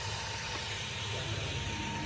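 Steady background noise: a low hum with hiss, no distinct events.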